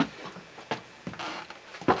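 A few sharp clicks and knocks, the loudest just before the end, with light scuffing between: a cabin door being opened and stepped through.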